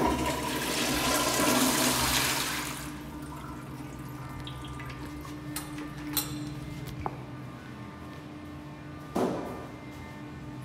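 Lamosa Vienna Flux flush-valve toilet flushing: a loud rush of water for about the first three seconds, then a quieter wash of water as it finishes. A few light clicks follow, and a short knock near the end.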